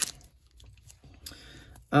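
A single sharp click of hard plastic card holders knocking together, followed by faint rustling as a stack of trading cards in plastic top loaders is picked up and handled.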